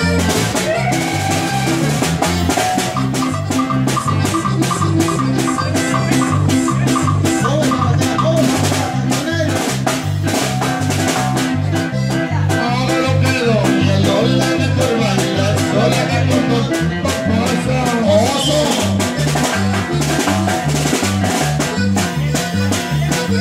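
Live norteño band playing an instrumental polka. The electric bass alternates notes on a steady beat under a drum kit, with a lead melody on top.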